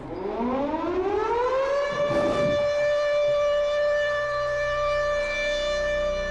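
Air-raid siren sound effect winding up in pitch over about two seconds, then holding a steady wail. A low droning tone comes in underneath about two-thirds of the way through.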